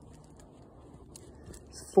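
Quiet outdoor background with a faint steady low hum and scattered faint ticks and rustles. A man's voice starts right at the end.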